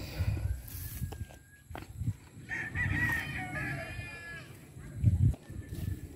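A rooster crowing once, one long wavering call of about two seconds starting around the middle.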